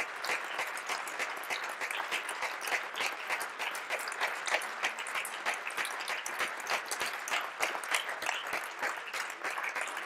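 Audience applauding, many hands clapping steadily throughout.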